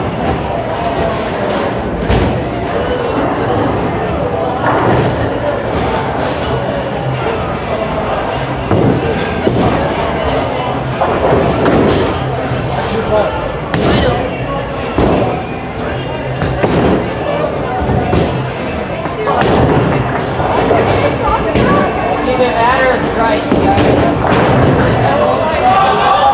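Busy bowling alley din: background music and people talking, broken by sharp thuds and crashes of bowling balls and pins.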